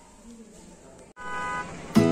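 Faint room tone for about a second, then after a sudden cut a vehicle horn sounds steadily for under a second.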